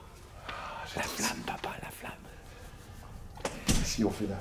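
Quiet murmured talk, then a few sharp hand claps just before the end, the loudest sound.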